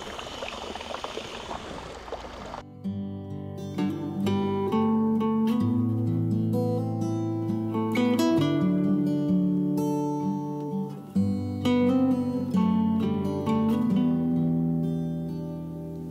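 Running water for the first few seconds, cut off abruptly about three seconds in by acoustic guitar music with plucked notes.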